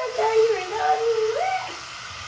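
A child's voice holding one long wordless note that glides up in pitch near the end.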